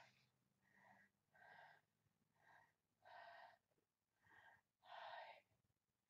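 A woman breathing in short, audible breaths through the mouth, faint, about six breaths in quick succession.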